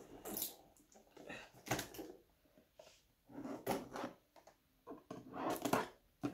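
Small knife cutting and scraping through the adhesive tape sealing a cardboard gift box while the box is handled: a few short scrapes and rustles with pauses between.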